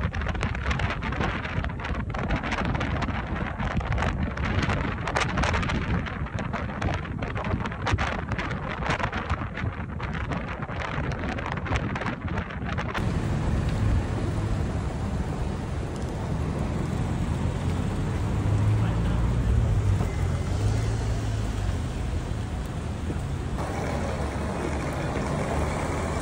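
Gusty wind buffeting the microphone, then, after a sudden cut, outdoor street ambience with a steady low rumble of traffic.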